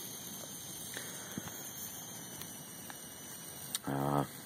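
Campfire of damp logs burning, a steady low hiss broken by a few sharp, scattered pops and crackles.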